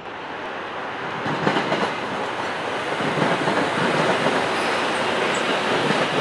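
Passenger train running through the station: a steady rush of wheels on rail with repeated clicking over rail joints, growing louder over the first few seconds as it nears.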